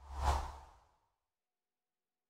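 A short whoosh sound effect for an animated logo reveal, swelling over a low rumble and dying away within the first second.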